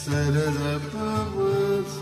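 Live ghazal ensemble music: an ornamented melodic lead line with gliding pitch bends, over a sustained low accompaniment.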